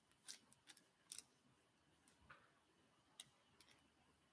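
Near silence broken by a handful of faint, sharp clicks at irregular intervals, most of them in the first second and a couple more near the end, from something being handled.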